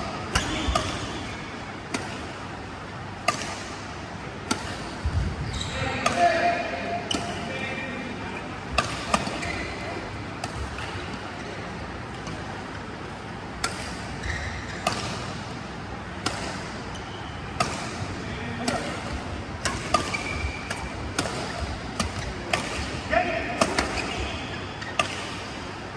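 Badminton rackets hitting shuttlecocks, sharp irregular pops several seconds apart, from the near court and the courts beyond.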